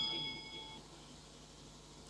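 A notification-bell ding sound effect: a few clear bell tones ringing together and fading away within the first second.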